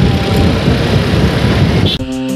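An old scooter being ridden through traffic: steady engine and road noise.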